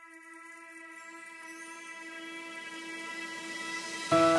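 Background music: a sustained ambient chord held on one pitch with its overtones, slowly growing louder.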